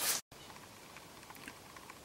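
Paper towel rubbing over a wooden napkin ring, cut off abruptly a quarter second in; after that, only low room tone with a few faint ticks.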